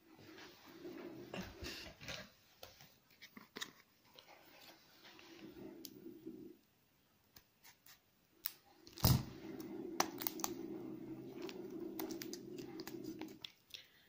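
Clear plastic wrapping crinkling and crackling as it is worked loose and peeled off a small notebook by hand, with scattered clicks and a sharp snap about nine seconds in.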